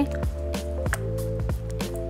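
Background music with a steady beat over sustained bass and mid notes.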